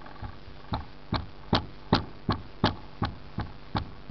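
Rag loaded with rubbing compound being rubbed hard back and forth by hand over a painted car hood: a steady series of about ten short strokes, a little more than two a second, starting under a second in.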